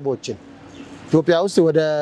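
A man speaking, with a short pause, then a long drawn-out syllable held on one steady pitch near the end.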